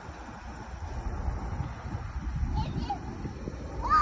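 Low outdoor rumble with faint distant voices, then a child's brief high-pitched call near the end.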